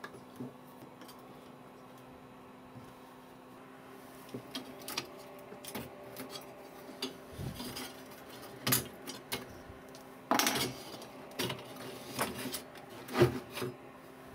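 Pliers and a TV's metal-shielded IF module circuit board being handled. Scattered metallic clicks, scrapes and knocks grow busier from about four seconds in, with a short clatter about ten seconds in and the loudest knock near the end. A faint steady hum runs underneath.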